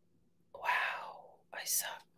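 A woman whispering to herself: a couple of breathy, half-voiced syllables after about half a second of quiet.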